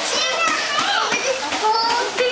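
Young children's high-pitched voices chattering and calling, with no pause.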